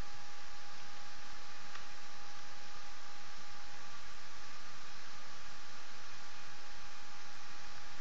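Steady hiss of an open recording microphone's noise floor with a thin, steady tone running through it, and one faint click about two seconds in.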